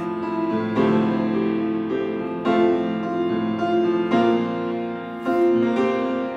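Live grand piano accompaniment for a ballet barre exercise: a slow piece, with a new chord struck about every second and a half and left to ring.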